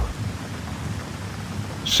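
Steady rain falling in a thunderstorm, with a low rumble of thunder underneath.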